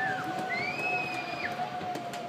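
Music: a steady held low note under long high notes that slide up, hold and drop away, over a low background murmur.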